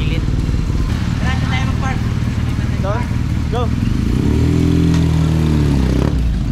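Motorcycle engine running steadily, revving up and back down about four seconds in.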